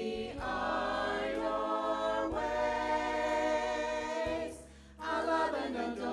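Church choir singing in long held notes, amplified through microphones, with a short break between phrases about four and a half seconds in.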